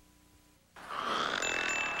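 A brief gap of near silence at the cut between commercials, then chimes fade in about three-quarters of a second in, a soft shimmering ring that grows louder.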